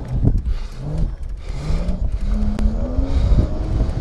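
Electric motor of a 3000 W, 48 V e-bike whining under power, its pitch climbing in steps as the bike gathers speed, over a heavy low rumble of wind on the handlebar-mounted microphone.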